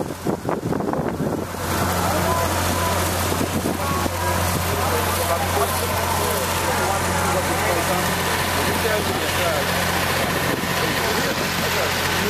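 The engine of a cane elevator at a canal-side loading point running steadily with a low hum, with voices chattering in the background.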